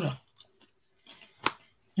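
A few faint ticks, then one sharp, short click about one and a half seconds in.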